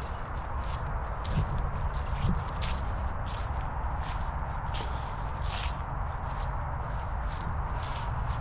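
Footsteps of a person walking across grass strewn with dry fallen leaves, a short rustling step about twice a second over a steady outdoor background.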